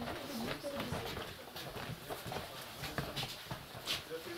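Indistinct murmur of young girls' voices, with scattered knocks and shuffling from people moving about in a small room.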